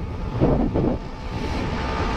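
Wind rushing over the microphone, with the steady low drone of the motorcycle's engine and tyres, while riding along the road at about 74 km/h.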